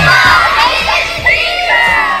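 A group of children cheering and shouting together, many high voices overlapping.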